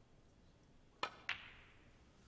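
Two sharp clicks about a quarter second apart: a snooker cue tip striking the cue ball, then the cue ball clacking into the pink, with a brief ring after the second click.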